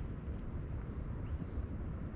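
Steady low rumbling background noise, with no distinct event.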